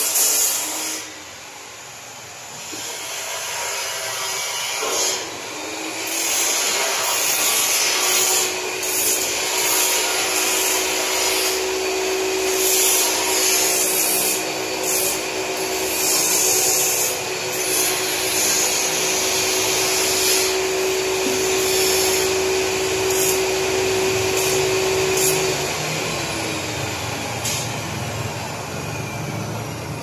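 Electrical wires being pulled through metal ceiling framing, rubbing and scraping against it in a continuous rasp broken by sharper scrapes. A steady hum joins in about eight seconds in and stops a few seconds before the end.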